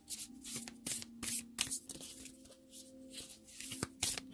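A deck of Nature Whispers oracle cards being shuffled by hand: a run of irregular soft card clicks and flicks over a faint steady hum.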